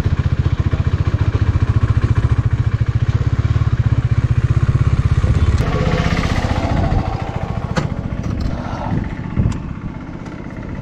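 A KTM Duke 390's single-cylinder engine running at low speed with a rapid, even pulse. It turns rougher for a moment and then dies away about seven seconds in, followed by a few sharp clicks and a knock.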